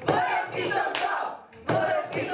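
A group of voices shouting together, in two bursts with a short break about one and a half seconds in.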